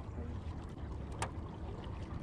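Small fishing boat under way on a lake: a steady low rumble of water and wind along the hull, with one sharp click a little past the middle.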